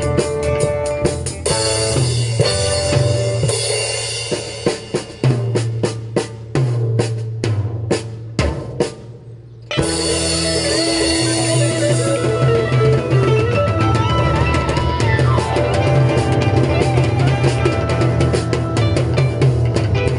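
A small live rock band (drum kit, electric guitar, bass) playing. Partway through, the music thins to spaced drum hits and fades, drops out for a moment, then the full band comes back in at about ten seconds, with a lead line bending up and down a few seconds later.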